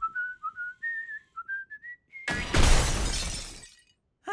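A cartoon character whistling a short tune that climbs step by step, then, a bit past halfway, a loud crash of something breaking that dies away over about a second and a half.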